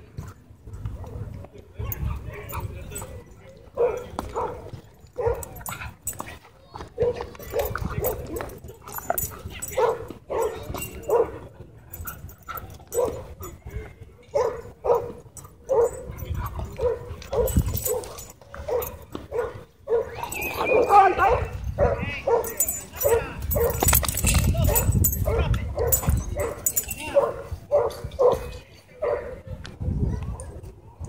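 A dog barking over and over, the barks coming more than once a second, with a higher, wavering cry about twenty-one seconds in.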